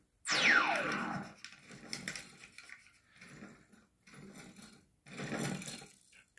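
Cartoon soundtrack heard from a TV set: a loud, fast-falling whistle-like sound effect just after the start, then short phrases of music.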